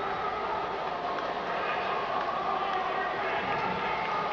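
Ballpark crowd noise: a steady, even din from the stands.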